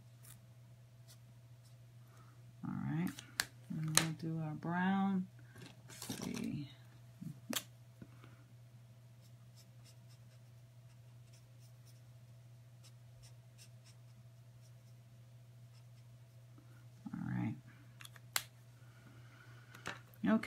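Felt-tip marker caps clicking a few times as pens are swapped, over a steady low electrical hum. Short wordless hums or murmurs from a woman come a few seconds in and again late on.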